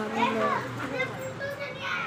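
Children's voices: a child talking in a high voice, with the pitch rising and falling throughout.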